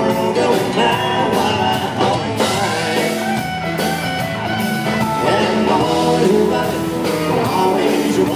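Country band playing live: fiddle, electric and acoustic guitars, bass and drums, with a male lead vocal.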